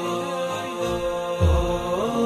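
Background vocal music: a voice chanting a slow melody in long held notes that step from pitch to pitch. A low thud about a second and a half in.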